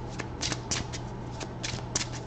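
A deck of tarot cards being shuffled by hand: a run of quick, irregular papery flicks and slaps.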